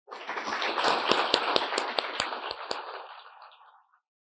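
Audience applauding, with a few louder single claps standing out, fading away near the end.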